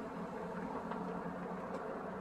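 Steady hum of a vehicle's engine and road noise, with an even low drone and no sudden sounds.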